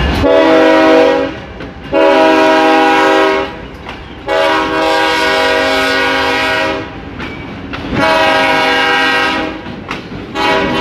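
Freight locomotive air horn sounding four separate blasts, several notes at once, the third blast the longest. A faint rumble of the passing train lies under it.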